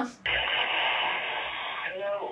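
Steady static hiss of a phone line played through a smartphone's speaker, with the thin, narrow sound of telephone audio. Near the end a short voice comes in.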